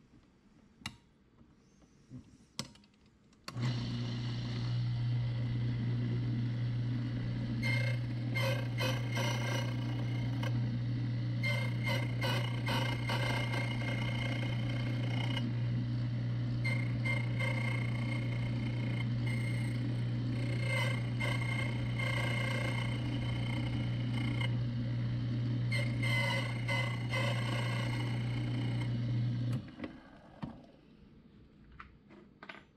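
A few clicks as a key blank is clamped into an HPC code key-cutting machine, then its motor starts about three and a half seconds in and runs with a steady hum. Over the hum the cutter wheel bites into the brass Schlage key blank again and again, cutting the code, until the motor shuts off just before the end.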